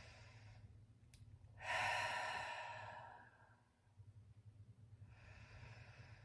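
A woman breathing deeply and slowly: a soft breath in through the nose, then a long exhale out through the mouth, like a sigh, that fades away over about two seconds, then another breath in near the end.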